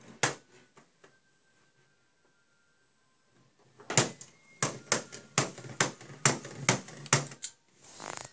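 A small plastic LEGO hammer model striking: one clack just after the start, then a quick, uneven run of about a dozen sharp plastic clacks from about four seconds in until shortly before the end.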